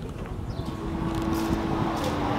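Outdoor city ambience: a low, steady rumble of distant traffic, with a faint steady hum that comes in under a second in.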